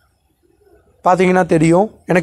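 Near silence, then a person's voice speaking for about a second, starting about a second in.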